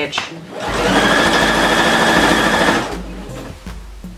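Electric sewing machine running a straight stitch along a jersey hem over an overlocked edge: a steady run of about two seconds that comes in about half a second in and stops abruptly.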